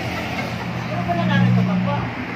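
A motor vehicle engine running close by, a steady low hum that swells in the second half and eases off at the end, with voices talking in the background.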